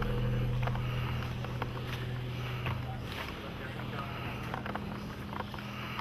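A steady low machine hum, with scattered light clicks and knocks over it.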